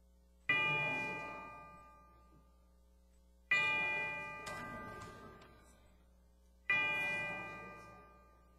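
A bell struck three times, about three seconds apart, each stroke ringing out with several clear tones and fading away.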